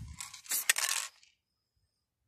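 Aerosol spray-paint can spraying black paint onto a wall: a hiss that trails off in the first half second, then a second short hiss of about half a second with a few sharp metallic clicks.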